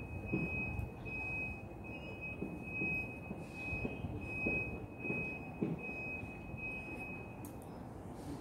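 Soft gulping as a person drinks coconut water straight from a young green coconut. Behind it a thin, steady high-pitched whine pulses on and off and stops shortly before the end.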